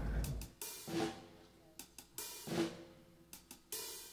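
Drum kit with Zildjian cymbals played lightly and sparsely: scattered single hits on drums and cymbals at irregular spacing, the cymbals ringing on between strikes.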